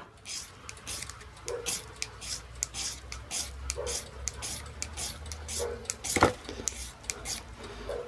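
Striker blade scraping a magnesium rod, shaving magnesium onto paper: a rapid run of short, sharp scratching strokes, a few a second, with one louder stroke about six seconds in.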